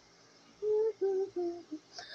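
A woman humming with her mouth closed, three short notes, each a little lower than the last, starting about half a second in.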